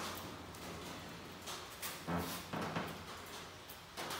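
Uncapping fork scraping wax cappings off a frame of honeycomb: soft scratching strokes, a few sharper ones about one and a half to two seconds in, over a faint low hum.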